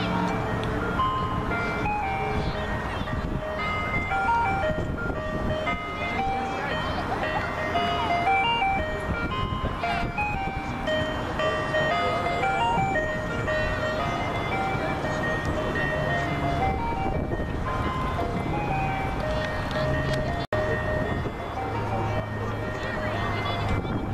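A simple electronic chime tune of single high notes, stepping from note to note about every half second, over a low background rumble and distant voices; the sound cuts out for an instant near the end.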